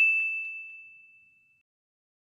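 A single bright, bell-like ding sound effect, struck once and dying away over about a second and a half.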